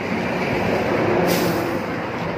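A heavy road vehicle passing close by, its engine noise swelling to a peak about midway and then easing, with a brief hiss just after the middle.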